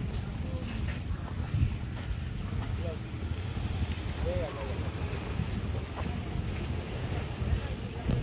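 Wind buffeting the microphone as a steady, uneven low rumble outdoors by the sea, with a few faint, brief pitched sounds near the middle.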